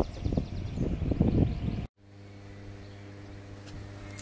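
Wind buffeting the microphone for about two seconds. After a sudden break comes a steady electrical hum from a substation's transformers, pitched at twice the 50 Hz mains frequency with a row of overtones above it.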